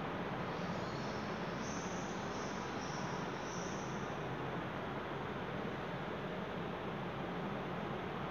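Steady background hiss, with a short run of faint high-pitched chirps between about one and four seconds in.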